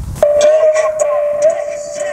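A steady held tone starts a fraction of a second in and holds at one pitch, wavering slightly.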